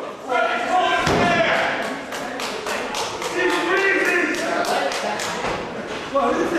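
Wrestling ring noise: a heavy thud about a second in, then a run of sharp smacks, about three a second, under the voices of a few spectators shouting.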